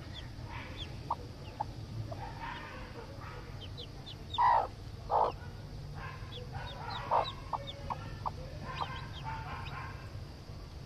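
Broody hen clucking, with two loud clucks about halfway through and another a couple of seconds later, while a newly hatched chick peeps in short, high, falling notes throughout.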